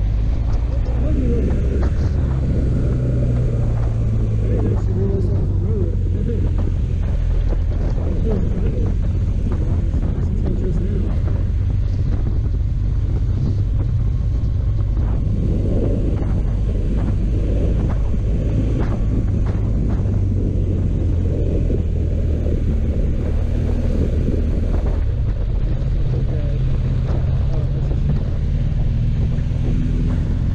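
Motorcycle engine running at road speed under a heavy rush of wind on the microphone; the engine note shifts with the throttle and climbs near the end.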